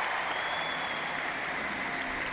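Audience applauding steadily, with a faint high whistle-like tone between about half a second and a second in.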